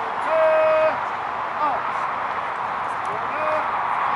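A man shouting a drawn-out military drill command: one long held call about half a second in, then a shorter call about three seconds in, as a line of reenactors brings their muskets to the shoulder.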